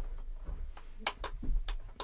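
Several sharp small clicks, about four in the second half, with soft handling bumps: fingers feeling over and working the small switches and attendant call button on the wall of an old railway sleeping-car compartment.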